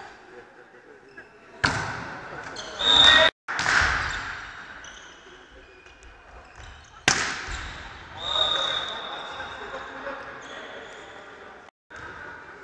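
A volleyball rally in an echoing sports hall. Two sharp hits on the ball come about five and a half seconds apart, each followed by loud shouting from the players. A high steady referee's whistle sounds shortly after the second hit.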